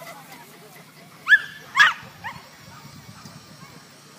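Whippet giving two sharp, high-pitched yips about half a second apart, a little over a second in, as it sets off after the lure.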